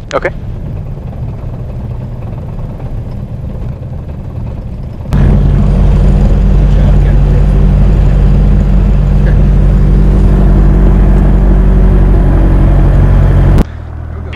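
Socata TB10 Tobago's four-cylinder Lycoming O-360 engine and propeller running at low power while the plane rolls out and taxis after landing, heard from inside the cockpit. About five seconds in the steady engine drone becomes suddenly much louder and stays level, then drops back abruptly shortly before the end.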